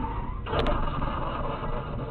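Car engine and road noise picked up by a dashcam in the seconds after a collision, with two quick knocks about half a second in.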